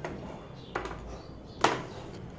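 Handling noise of multimeter test leads being removed from wire connections: a faint rustle near the middle and one sharp click about one and a half seconds in.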